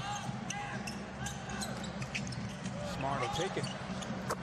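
NBA game sound: a basketball bouncing on a hardwood court in repeated short strikes, over steady arena crowd noise, with a broadcast commentator's voice.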